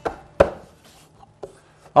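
Wooden Shaker table set down on a workbench: two sharp wooden knocks, the second, about half a second in, the louder, then a few faint taps as it is settled in place.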